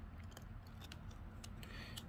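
Faint light clicks and scrapes of trading cards being handled and shifted in the fingers, scattered through the pause.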